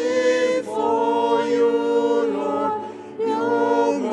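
Choir singing a hymn in held notes, with a short breath about three seconds in.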